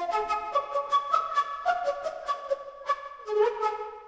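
Concert flute synthesized by a machine-learning model (Magenta's DDSP Tone Transfer) from a home recording. It plays a quick run of short notes and ends on a lower held note, following the pitch of the recorded input closely.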